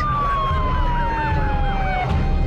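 Siren sound effect: one long tone gliding slowly down in pitch, with a faster warbling siren above it, over a low rumble.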